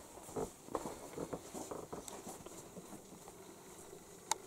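Soft footsteps and scattered light knocks of a person walking away across a room, denser in the first two seconds and then thinning out.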